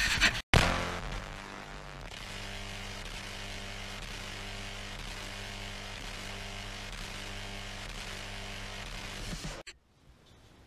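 A brief loud handling noise of a hand over the camera microphone at the very start, then intro music: a steady, low, buzzing synth drone with an even repeating pulse, cutting off suddenly near the end.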